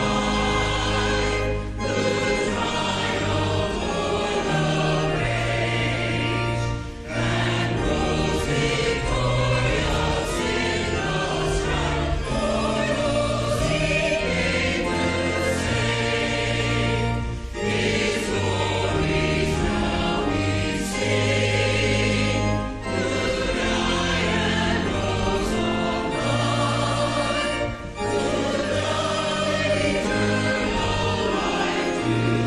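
Church choir singing a hymn-like anthem with keyboard accompaniment, sustained phrases with brief breaks between them.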